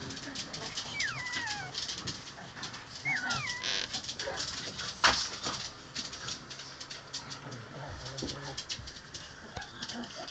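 Tricolour King Charles spaniel puppies play-fighting, with two short falling whimpers about one and three seconds in over scuffling and small clicks. A sharp knock about halfway through is the loudest sound.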